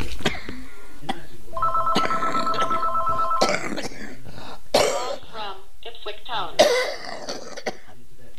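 Telephone ringing: one steady electronic ring lasting about two seconds, starting a little over a second in.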